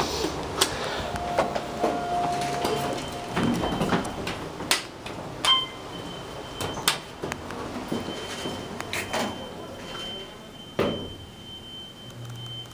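Otis Series 1 hydraulic elevator's doors sliding, with scattered clicks and knocks. A thin, steady high tone starts about halfway through and carries on to the end.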